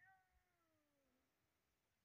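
Near silence, with a very faint falling pitched tone that fades out in the first second.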